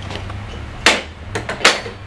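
Metal plumbing parts, brass tub drain pieces and a stainless steel drain-extractor tool, being set down on a ledge: two sharp knocks about a second in and near the end, with a few lighter clicks between, over a steady low hum.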